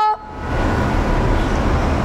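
Steady rumbling background noise with no tone in it, swelling up over the first half second as a sung phrase breaks off at the start.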